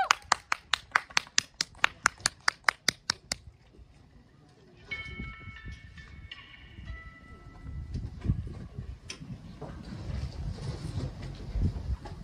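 A fast, even train of sharp clicks, about six a second, fading away over the first three seconds. A few faint high tones follow, then low thumps and rumble as the stage equipment is handled and set up.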